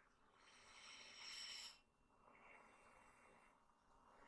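Faint hiss of air moving through a tracheostomy tube and its breathing hose: one hiss of about a second and a half that grows and then stops short, followed by a softer one.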